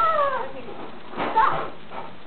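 Two short high-pitched vocal calls: the first, at the start, falls in pitch; the second comes about a second later.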